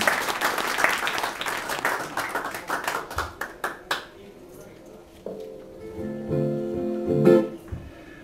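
Audience applause fading out over the first four seconds, then an acoustic guitar plucked a few single notes and chords as it is checked for tuning.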